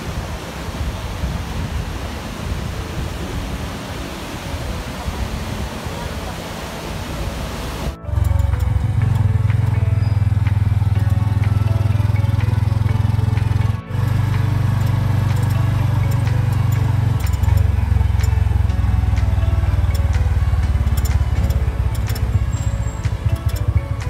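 Ocean surf and wind noise on the microphone, then, after a sudden cut about eight seconds in, music with a heavy bass line that runs on with a brief dropout midway.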